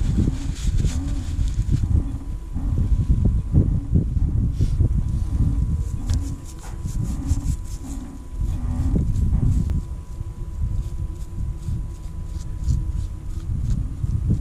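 Hand tool scraping hardened old grease out of the teeth of a Harken winch gear, a rapid run of small scratches through the second half, over a continuous low rumble.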